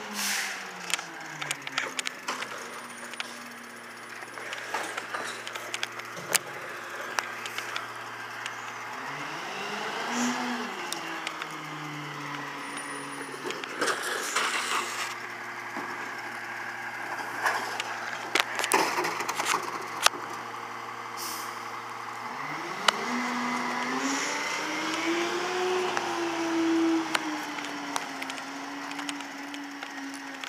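A Freightliner M2 garbage truck's diesel engine idling and revving up and back down a few times, its revs rising again near the end and staying up. Short hisses of air from the air brakes and scattered clanks come through it.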